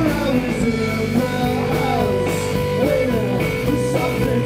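Indie rock band playing live, an instrumental stretch between sung lines: electric guitars with sliding, bending notes over a steady bass.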